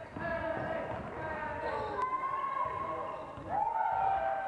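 A basketball being dribbled on a sports-hall floor, with players' voices calling out in the hall.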